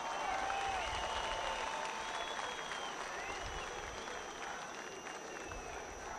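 A crowd applauding, with scattered shouts over it. The applause swells just after a speech line ends and fades slightly toward the end.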